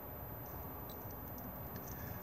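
Quiet room tone with a steady low hum and a few faint ticks as a finger taps an Alde heating control touchscreen.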